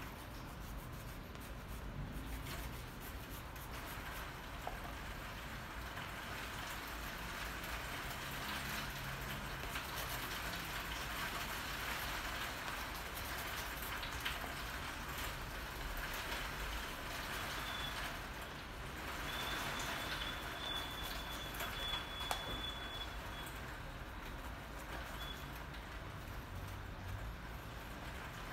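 Steady rain falling, an even hiss and patter, with a few light taps over it.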